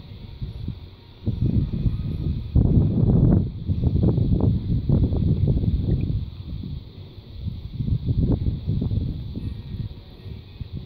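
Wind buffeting the microphone in irregular low gusts, strongest from about two and a half seconds in and again near the end.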